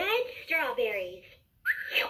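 LeapFrog Count Along Register toy's small built-in speaker playing high, sliding, whistle-like electronic character sounds after a button on its screen is pressed. It comes in two phrases with a short gap about a second in.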